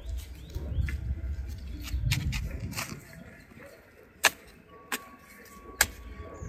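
Spade blade chopping into grassy soil to mark out and start a planting hole: a series of sharp, short strikes, the loudest about four seconds in, over a low rumble in the first half.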